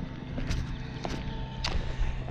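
Footsteps across a roof: about four short, sharp steps roughly half a second apart.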